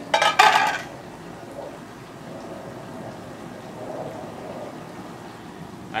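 A brief splash and clatter at the aluminium stockpot of seasoned water right at the start, then a steady hiss from the burner under the pot.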